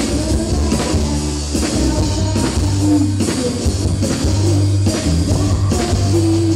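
Live rock band playing loudly through a stage PA: distorted electric guitar, bass guitar and drum kit, with a woman singing over them.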